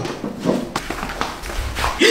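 A man coughing and gasping in a string of short, irregular bursts, choking on very spicy food.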